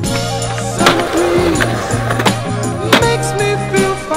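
Skateboard hitting concrete: two sharp board impacts, about a second in and again near three seconds, over backing music with a steady bass note.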